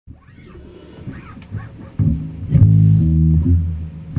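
Amplified electric guitar playing loud, sustained low notes, starting about halfway in after a quieter start.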